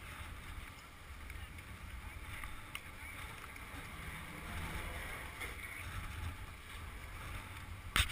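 Wind rumbling on the camera microphone, with the steady hiss of skis sliding slowly over snow.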